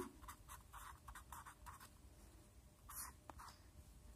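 Faint scratching of a pen writing on paper, a run of short strokes with a slightly louder one about three seconds in.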